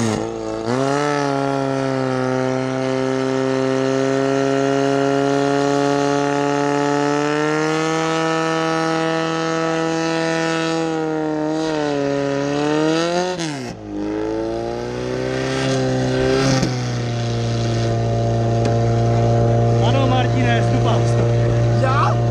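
Portable fire pump's engine running hard at high revs, pumping water. Its pitch climbs about a second in and holds steady, then dips sharply for a moment about two-thirds of the way through and settles again at a slightly lower, steady speed.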